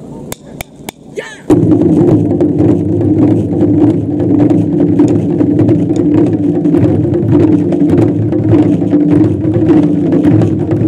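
A taiko ensemble of Japanese drums. A few sharp stick clicks and a short call are heard, then about one and a half seconds in all the drums come in together with loud, dense, continuous drumming.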